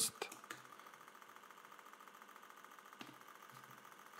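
Low, steady hum of background room and recording noise, with a single faint click about three seconds in.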